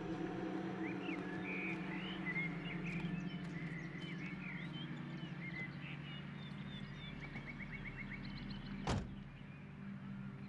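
Birds chirping and trilling over a steady low hum, with one sharp knock near the end.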